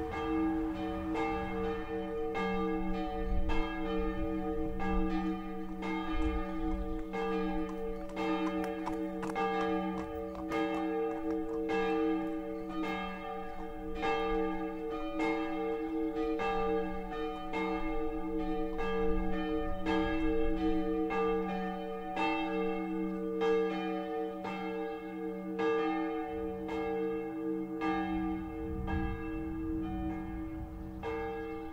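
Church bells ringing: a steady run of strikes less than a second apart over a continuous ringing hum.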